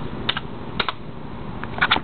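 Computer keyboard being typed on: a handful of separate key clicks at uneven spacing, two of them close together near the end, as a web address is entered.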